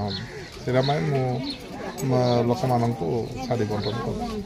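A man speaking in Odia in a steady interview voice, with short pauses between phrases.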